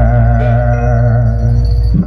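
Javanese gamelan music for an ebeg dance, closing on a deep gong stroke that rings on as a low hum with a wavering tone above it, dropping away near the end.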